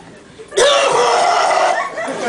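A loud, rough, strained vocal noise made into a microphone, starting suddenly about half a second in and lasting just over a second.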